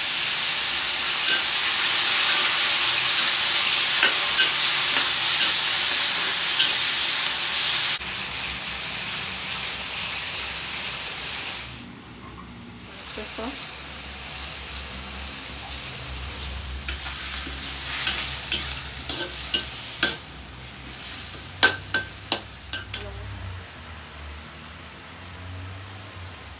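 Chicken and onions sizzling loudly as they stir-fry in a wok. After about eight seconds the frying turns quieter, once sauce and liquid are in with the potatoes. In the second half a metal spatula scrapes and clinks against the wok.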